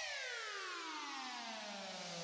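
A single synthesized tone with a rich stack of overtones sliding steadily downward in pitch, the fall slowing as it goes: a pitch-drop transition sound effect in the edit between the intro and the tutorial.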